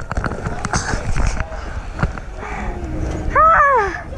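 Repeated thumps and knocks of a handheld camera bouncing on a trampoline, over a hubbub of voices in a big hall. A loud, high-pitched yell that rises and then falls comes near the end.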